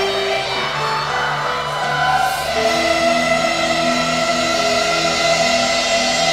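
A choir and instrumental ensemble performing live, with sustained chords that move in steps.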